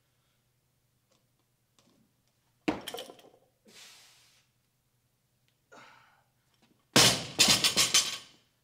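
Loaded barbell with rubber bumper plates: a sharp clank about two and a half seconds in as the bar is pulled up and caught in a low front squat, followed by a forceful breath. Near the end the bar is dropped to the floor, thudding and rattling several times as it bounces.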